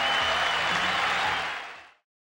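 Studio audience applauding, fading out to nothing over the last half second.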